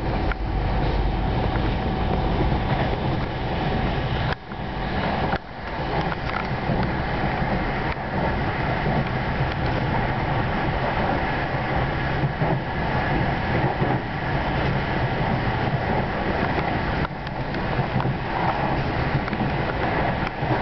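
Steady running noise of a passenger train heard from aboard while it travels at speed. There are two brief drops in level about four and five seconds in.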